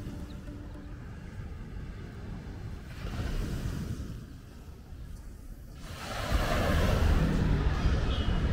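The tail of background music fades out into a quiet, low outdoor rumble. About six seconds in, a much louder city street ambience with traffic noise starts and carries on.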